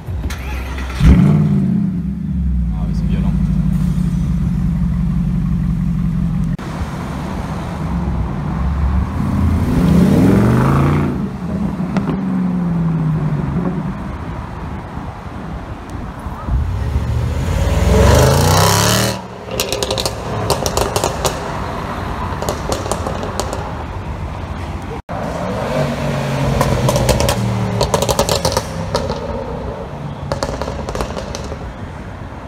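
Mercedes-Benz SLS AMG's V8 with an Akrapovič exhaust starts with a loud bark about a second in and settles into a steady, deep idle. Later the engine is revved, rising and falling in pitch twice, the second rev the loudest.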